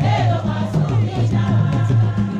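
Choir-style group singing over music with a repeating bass line.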